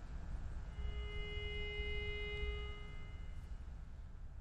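A single steady note, held for about two seconds, sounded to give the choir its starting pitch just before they sing. A faint low room rumble lies underneath.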